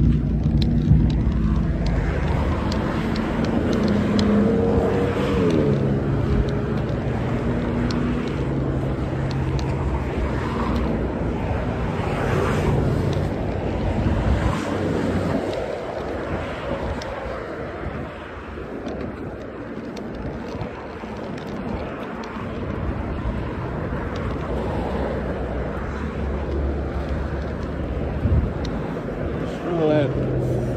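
Street traffic driving past, a steady engine hum that is louder for the first half and eases off about halfway through, with one vehicle's pitch sliding as it passes a few seconds in.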